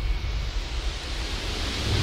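A rising white-noise sweep, an edited transition effect, growing steadily higher and brighter over a low rumble.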